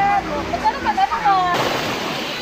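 A voice calling out, then an abrupt cut about one and a half seconds in to the steady wash of small waves on a beach.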